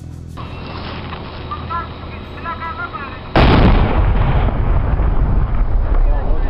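A large explosion goes off about three seconds in: a sudden boom followed by a long, loud, low rolling rumble. Faint voices talk before it.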